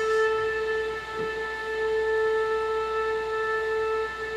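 The accompanying instrument holds one long, steady note with no wavering, ringing on between sung lines of a cabaret song.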